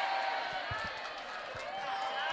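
Audience of women laughing and chattering together, many voices overlapping.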